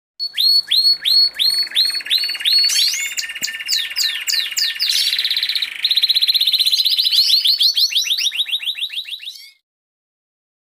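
Domestic canary singing: a long song of quick repeated phrases, slower falling notes at first, then fast high trills that change every second or two. It cuts off abruptly near the end.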